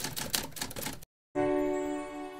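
Rapid typewriter key clicks, the sound effect for text typing out on screen, stopping about a second in. After a brief gap a sustained musical chord sounds and slowly fades.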